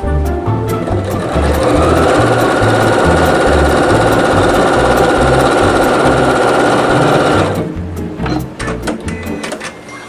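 Sewing machine stitching at a steady high speed, coming up to speed about a second in and stopping suddenly a couple of seconds before the end. Background music with a steady beat plays throughout.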